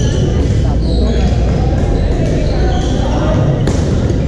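Echoing din of a busy badminton hall: scattered voices from players on many courts over a steady low rumble, with brief high sneaker squeaks on the hardwood floor and a sharp racket hit on the shuttlecock near the end.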